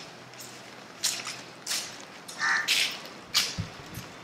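Crows cawing in the trees: several short, harsh caws spaced irregularly about a second apart, over faint outdoor background.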